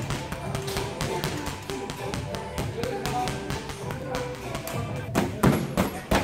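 Quick, repeated taps of boxing gloves striking a post-mounted punching ball, over background music. Near the end come louder, heavier thuds of punches landing on a padded wall target.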